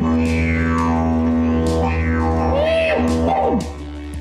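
Didgeridoo played through a freshly moulded beeswax mouthpiece: a loud, steady low drone with overtones sweeping up and down as the player shapes the sound, stopping about three and a half seconds in. It is a play test of the new wax mouthpiece.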